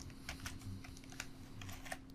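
Faint computer keyboard keystrokes: about half a dozen light, scattered clicks over a faint steady hum.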